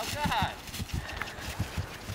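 Warmblood gelding's hooves striking turf under a rider: a steady run of dull thuds, about three to four a second.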